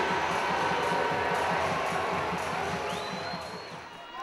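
Ice hockey arena crowd noise, many voices shouting and cheering, fading over the four seconds. A brief high steady tone sounds near the end.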